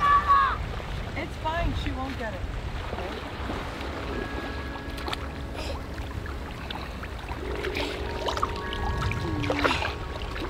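A young child's high-pitched squealing voice at the start, over the steady wash of small waves at the shoreline. Soft music with long sustained tones comes in about three and a half seconds in and carries on.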